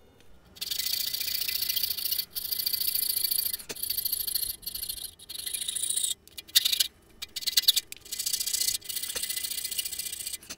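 Coping saw cutting a thin strip of wood: runs of rapid rasping strokes, each run about a second long, broken by short pauses.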